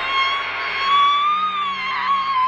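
A woman's long, loud scream from a horror film's soundtrack, held on one high pitch that rises a little midway and sinks back. A faint music score plays beneath it.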